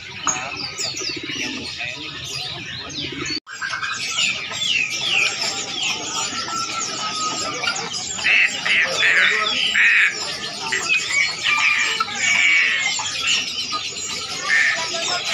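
Many birds chirping busily, with pigeons cooing low under the chirps in the first few seconds. The sound cuts out for an instant about three and a half seconds in, and the chirping comes in louder bursts later on.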